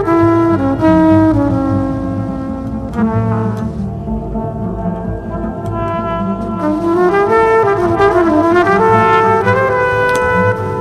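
Electronically processed trumpet playing a slow melodic line over electric bass and electronic backing. In the second half the trumpet notes bend up and down in pitch.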